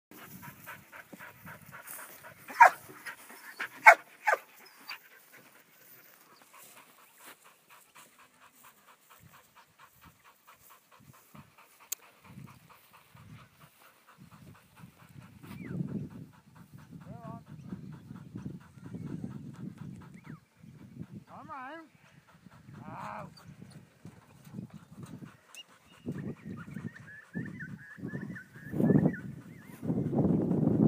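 Kelpie barking sharply three times a few seconds in while working sheep. Dorper ewes and lambs bleat now and then in the second half.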